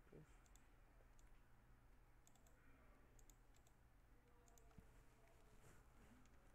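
Near silence with faint, sharp clicks scattered through it, several in quick pairs, from a computer mouse and keyboard in use.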